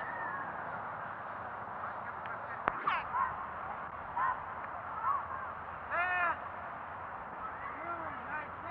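Short shouted calls from football players on a practice field over the steady hiss of an old film soundtrack. There is a sharp click near the start, and the loudest call comes about six seconds in.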